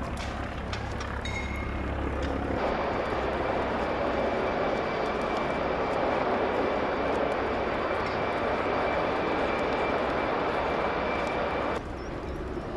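A steady engine drone with a rushing noise and a high whine, the whine coming in about a second in and the rushing noise swelling in a few seconds in; it cuts off suddenly just before the end.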